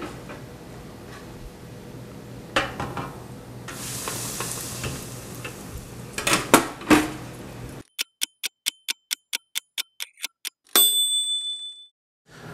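Basket of wings lowered into a stainless electric deep fryer: a brief hiss of frying in the oil and metal clanks of the basket handle and lid. After a sudden cut comes a kitchen timer ticking about five times a second, then a single bell ding, marking the end of the frying time.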